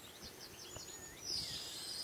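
Faint birdsong: a quick run of short high chirps, then a longer high note near the end.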